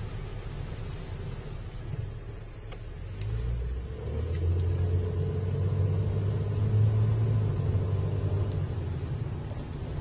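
Low vehicle engine rumble heard from inside a car. It grows louder about four seconds in, holds a steady drone, then eases slightly near the end as traffic moves off through a construction zone.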